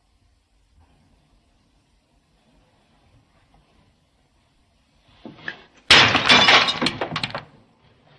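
A sudden loud crash of breaking glass about six seconds in, the shattering running on for about a second and a half.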